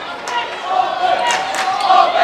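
Basketball dribbled on a hardwood gym floor, a few sharp bounces in the second half, over the voices of a crowd in the gym.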